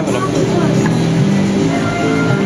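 Indistinct voices of people nearby, briefly near the start, over a steady low droning tone.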